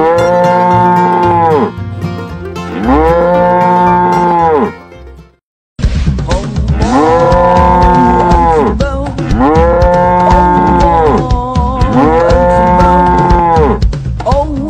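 A cow mooing about five times, each moo a long call that rises and falls in pitch, over a backing music track. The sound drops out for a moment about five seconds in, then the moos resume.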